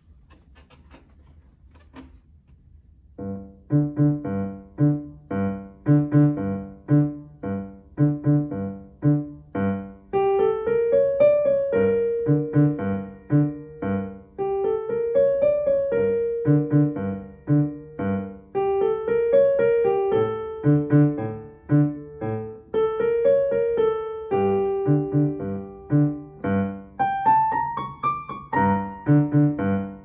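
Digital piano playing a minor-key piece, beginning about three seconds in: a steady repeated left-hand bass pattern under a G minor right-hand melody with B-flats and C-sharps. Near the end the melody climbs higher.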